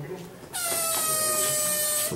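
Pneumatic air scribe, the fossil-preparation tool, run in one burst of about a second and a half: a high buzzing whine over a hiss of air, starting about half a second in and cutting off suddenly.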